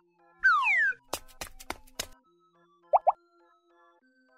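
Cartoon sound effects. A short falling whistle comes first, then four sharp clicks in quick succession like a camera shutter firing, then two quick rising blips, all over faint background music.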